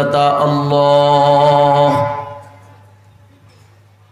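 A man's voice chanting a sermon line in a long, held melodic phrase through a microphone and PA, fading out about halfway through and leaving a low steady hum.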